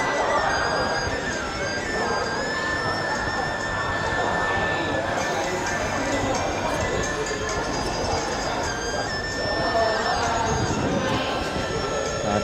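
Steady hubbub of a crowd of people chatting, with music playing over it.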